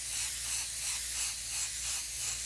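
Iwata Micron airbrush hissing steadily as compressed air blows through it, with a faint low hum underneath.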